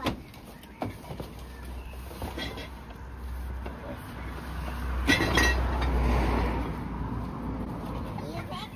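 Cardboard boxes being shoved into the back of a van. There is a sharp knock at the start and another just under a second in, then a loud bump about five seconds in, followed by a second or so of scraping and rustling as a box slides into place.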